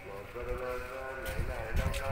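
Voices of people talking nearby, not close to the microphone, with low rumbles of wind buffeting the microphone near the end.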